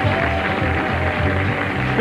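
Background music: a held high note over a bass line that steps from note to note.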